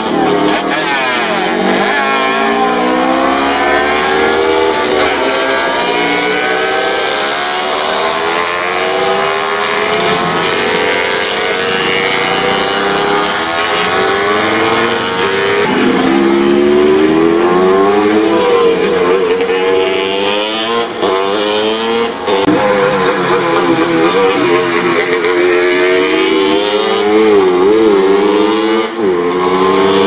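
Several vintage racing motorcycle engines revving hard, overlapping one another, their pitch rising and falling as the bikes brake and accelerate through a corner. The sound gets louder about halfway through.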